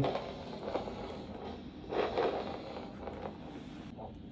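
Handheld vascular Doppler's speaker giving a steady hiss with a few brief swells and scraping as the probe is moved slowly through gel over the posterior tibial artery, searching for the pulse. No steady pulse signal comes through.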